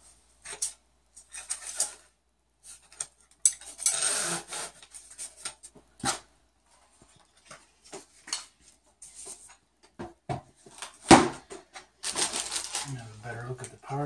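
Metal rods clinking and sliding out of a cardboard tube, with scattered knocks and clicks as the parts are handled on a table. There is a scraping stretch about four seconds in and a single loud knock about eleven seconds in.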